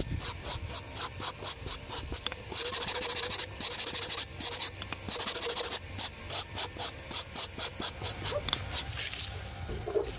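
Sandpaper rubbed by hand over a bamboo bottle's flat facets, a quick back-and-forth scraping of several strokes a second with a few longer continuous passes.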